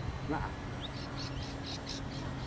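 A small bird chirping in a quick run of short high notes, about five a second, over a faint steady hum from a distant electric model plane in flight.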